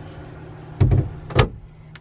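A small trailer cabinet door being handled and shut: a dull thump a little under a second in, then a sharp click about half a second later, over a faint steady low hum.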